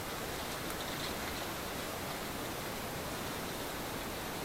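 Steady, even background hiss with no distinct sounds standing out.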